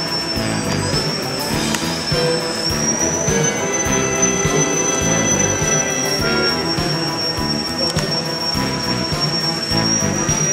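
Background music with the thin, steady high whine of an Electrifly VFO's electric motor and propeller over it, the pitch rising a little about three seconds in and easing down slightly after six seconds.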